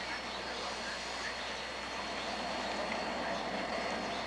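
Steady outdoor background noise with faint distant voices and a thin, high, steady whine underneath.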